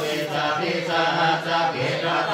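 Group of Buddhist monks chanting Pali verses in unison, a low, near-monotone drone of male voices held on a steady pitch.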